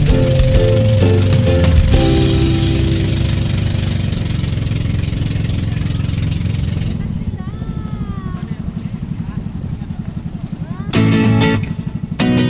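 A small boat's engine running with a fast low pulse under wind and water noise while the boat moves across open water. Background music plays at the start and returns with strummed guitar about a second before the end.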